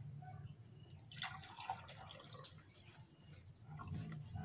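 Fresh water poured from a plastic pitcher into a drinking glass: a faint trickling and splashing.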